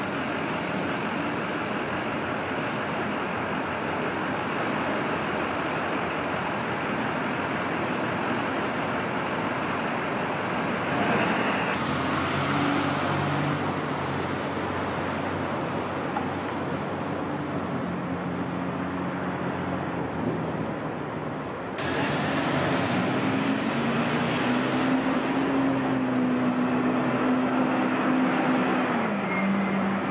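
SEPTA diesel transit bus running at a curbside stop amid steady street traffic noise. In the second half its engine note rises and holds as the bus pulls away, then drops back near the end.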